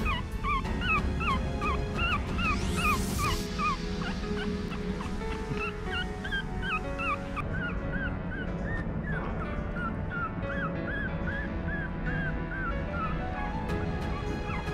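Newborn Maltese puppy crying in rapid, high squeaks, about three a second, over background music.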